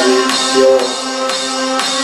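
Live band music: sustained chords over a steady beat, with a sharp percussive hit about twice a second.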